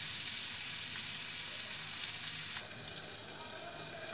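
Ivy gourd (kovakkai) pieces sizzling steadily in oil in a kadai.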